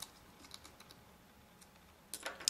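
Near silence with a few faint, scattered light clicks, the sharpest one right at the start. The clicks are from handling small hardware: a USB enclosure's circuit board being fitted onto a 2.5-inch hard drive's connector.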